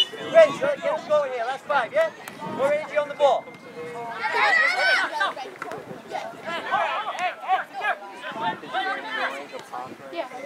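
Unintelligible voices calling out across a soccer field during play, with one loud, high-pitched shout lasting about a second, four seconds in.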